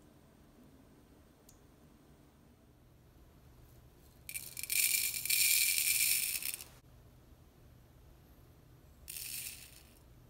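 Dry coriander seeds poured from a glass bowl into a plastic grinder jar, rattling and pattering for about two and a half seconds; near the end a shorter, quieter pour of cumin seeds rattles into the same jar.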